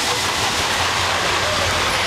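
Thunderation mine-train roller coaster running at speed along its track: a steady rush and rumble of the cars on the rails.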